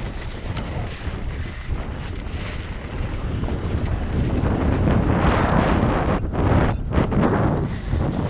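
Wind rushing over an action camera's microphone during a fast mountain-bike descent, mixed with the rumble and rattle of the bike's tyres rolling over a dirt and leaf-covered trail. It grows louder about halfway through.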